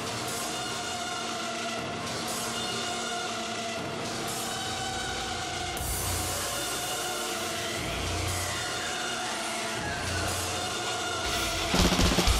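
Live extreme-metal song intro: a sustained, droning chord held throughout, with low bass-guitar notes entering about every two seconds from the middle. Just before the end, the full band crashes in with rapid drums.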